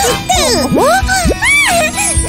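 Cartoon characters' wordless vocal sounds, high exclamations that slide steeply up and down in pitch, over light background music.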